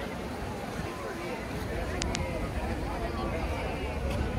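Indistinct chatter of passing pedestrians, with a steady low rumble underneath. Two short, very high chirps come in quick succession about halfway through.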